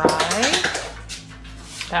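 A dog shaking its head so its ears and loose jowls (flews) flap, a short loud burst of flapping at the start that dies away within about a second.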